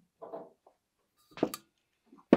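Handling sounds as a metal water bottle is pulled out of a laser rotary attachment's chuck: a soft knock about a quarter second in, then a sharper metallic clank about a second and a half in.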